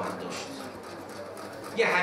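A pause in a man's speech into a microphone, with only faint low sound. His voice comes back loudly just before the end.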